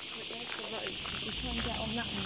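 Cicadas in the pine trees, a steady high-pitched buzzing drone, with faint voices talking underneath.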